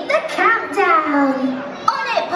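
High-pitched, excited voices calling out in drawn-out, gliding words.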